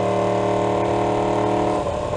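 2016 Yamaha R1's crossplane inline-four engine and exhaust at steady revs while cruising, one even engine note that breaks off just before the end.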